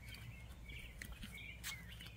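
Faint bird chirps, a few short calls scattered through a quiet outdoor background with a low steady hum.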